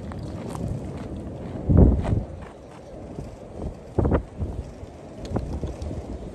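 Wind buffeting the microphone, strongest in a gust about two seconds in, with footsteps crunching on gravel and a few short knocks.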